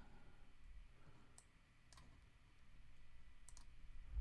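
Near silence with a few faint computer mouse clicks, two of them close together near the end, over a low room hum.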